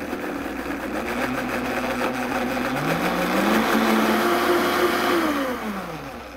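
Countertop blender motor running through a thick yogurt-and-cilantro sauce, with a steady whine. About three seconds in the pitch rises as the speed is turned up. It holds there, then falls away as the motor winds down near the end.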